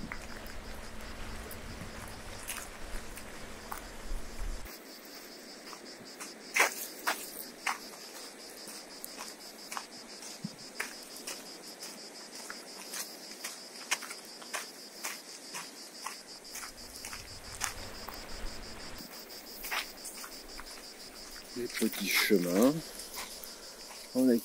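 A steady, high-pitched chorus of insects chirring in coastal scrub, with scattered light clicks over it.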